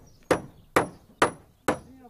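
Hammer blows on wooden formwork boards, evenly spaced at about two a second, each a sharp knock with a short ring.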